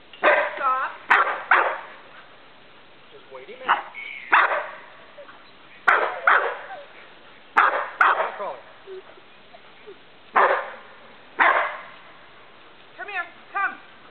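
A Samoyed barking at sheep it is herding: short, loud barks, mostly in pairs, every second or two.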